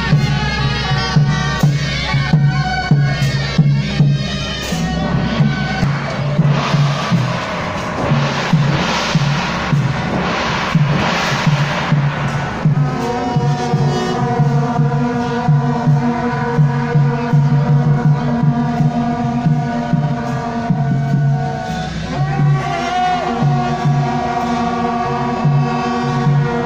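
Traditional Taiwanese temple procession band playing suona (double-reed horns) over a steady drum and gong beat, with crowd noise swelling in the middle and long held horn notes in the second half.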